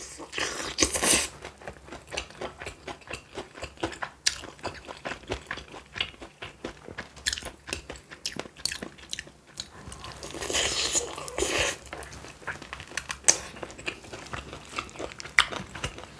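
Close-miked biting and chewing of sauce-glazed fried chicken drumstick meat, with many small wet clicks and crunches. Louder bites come about a second in and again around ten to eleven seconds in.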